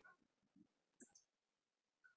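Near silence on the call's audio, with one faint brief click about a second in.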